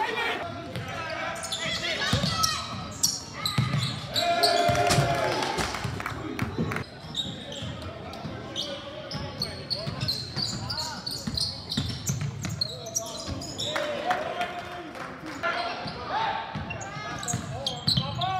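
Game sound from an indoor basketball court: a basketball bouncing on the hardwood floor among indistinct shouts and chatter from players and spectators, echoing in a large gym.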